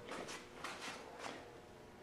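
Faint room tone with a few soft, irregular taps.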